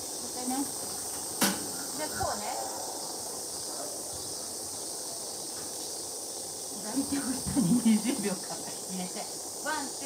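A steady high hiss, with a single sharp click about a second and a half in.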